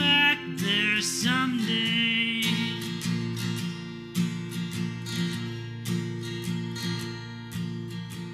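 Acoustic guitar strummed in a steady rhythm. A sung line carries over it for the first couple of seconds, and then the guitar plays on alone.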